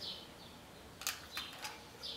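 A few faint plastic clicks as an eyeliner pencil is handled and set back into its slot in an eyeshadow palette.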